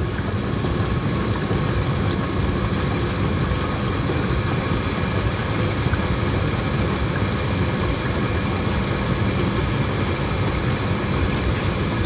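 GE GDF630 dishwasher's wash pump running steadily with water circulating, a constant low drone. It is a test run of the pump after its failed rubber outlet boot was replaced with an auto-parts hose and clamps.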